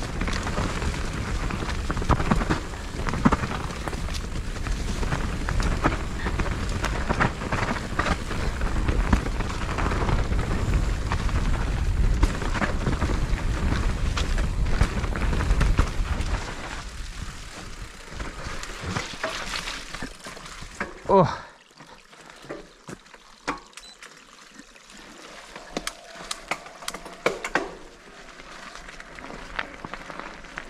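Mountain bike riding down a rough, leaf-covered dirt trail: a steady rush of air and tyre noise with frequent knocks and rattles as the bike goes over the ground. After about half the time it grows much quieter as the bike slows. There is one brief loud sound about two-thirds of the way through, then scattered light clicks.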